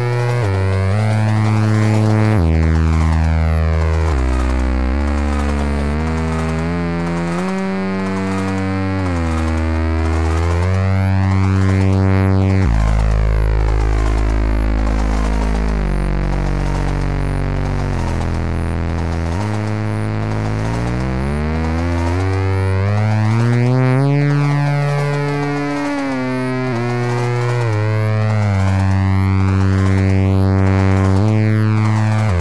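Electronic synthesizer music made on an iPad. A buzzy, sawtooth-shaped synth plays slow held chords over a stepping bass line. Around the middle a deep bass note is held for several seconds, and then some notes slide in pitch.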